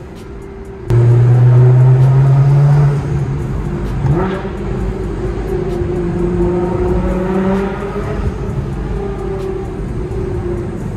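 Nissan GT-R's twin-turbo V6 heard from inside the cabin while driving. About a second in it suddenly gets much louder under acceleration, its note rising for about two seconds before dropping back. Just after four seconds the revs rise quickly, then it runs steadily.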